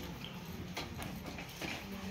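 Irregular light clinks and knocks of a metal spoon against a steel bowl as food is ladled out, over a steady low background hum.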